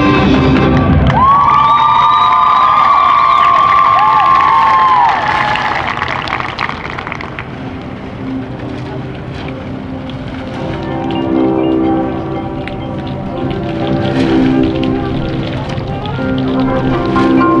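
High school marching band and front ensemble playing their show live in a stadium. A loud, low passage breaks off about a second in into a high held chord with sliding pitches, then the music thins out to a softer stretch before sustained lower chords build back near the end.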